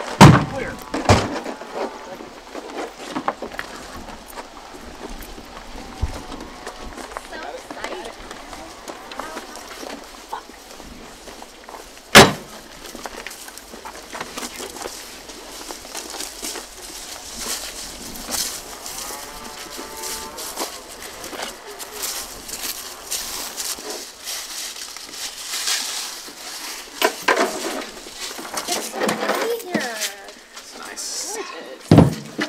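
Faint chatter of several voices in the open air, with two sharp knocks: one right at the start and a louder one about twelve seconds in.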